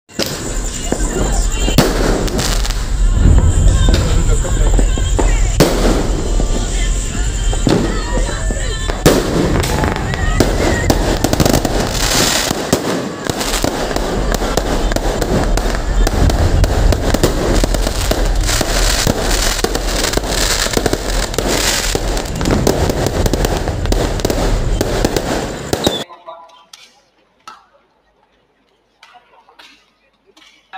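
Fireworks going off: a loud, continuous run of bangs and crackles with voices mixed in, cutting off about two seconds before the end.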